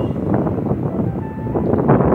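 Wind buffeting a phone's microphone outdoors: loud, steady noise strongest in the low range.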